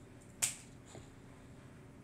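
A single sharp click about half a second in, with a fainter click about half a second after it, over a low steady background.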